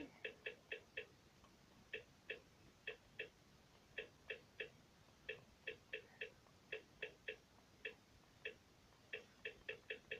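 Faint, short, sharp clicks, all alike, coming in irregular runs of two to four at about four a second with short pauses between.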